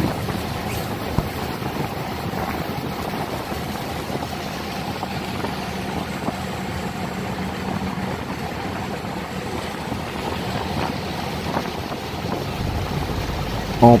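A small boat's engine running steadily under way, with water rushing along the hull; a low hum is heard for the first eight seconds or so.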